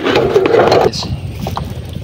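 Shrimp and net being shaken out of a nylon bubu trap net into a plastic basin: a dense, grainy handling noise for about the first second, then quieter handling sounds with a few small clicks.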